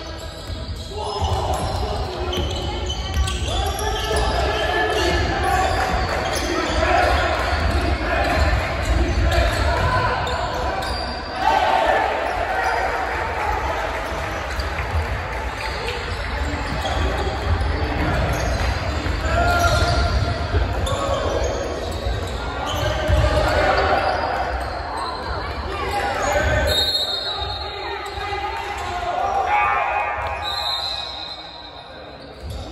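A basketball bouncing on a hardwood gym floor during play, over indistinct voices of players and spectators, all echoing in a large gym.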